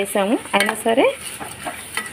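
Metal spoon stirring curry in an aluminium pot, scraping the pot in three short squealing strokes in the first second, over a faint sizzle of frying.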